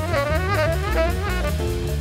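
Jazz combo recording: a horn plays a quick, winding melodic line with pitch bends over bass and drums.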